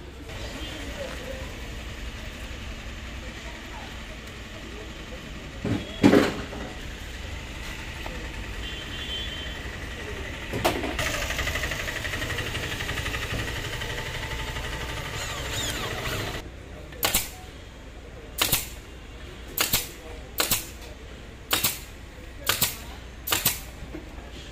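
A single loud knock comes about six seconds in. Then an electric hand drill runs steadily for about six seconds, boring into the auto rickshaw's canopy frame. A run of about eight sharp knocks, roughly a second apart, follows near the end.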